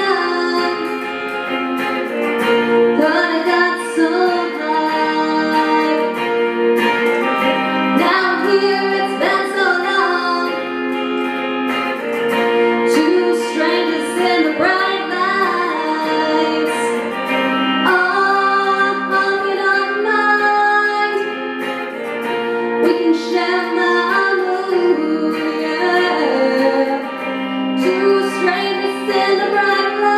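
A woman singing a pop-rock song over her own electric guitar played through an amplifier.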